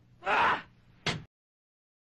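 A man's loud, breathy grunt of effort as he throws, then a second short huff about a second in. The sound then cuts out to dead silence.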